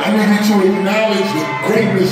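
A man's voice amplified over a concert PA in a large hall, with backing music.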